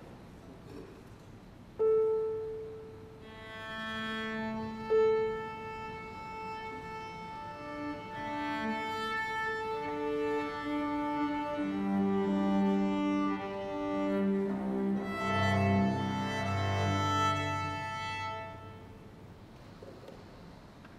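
Violin and cello tuning to an A struck on the piano. The piano's A sounds twice near the start, then the strings play long bowed notes on their open strings, shifting from string to string for about sixteen seconds, and stop shortly before the end.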